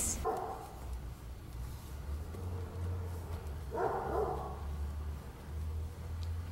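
A dog barking faintly: a brief sound just after the start and a single short bark about four seconds in, over a low steady rumble.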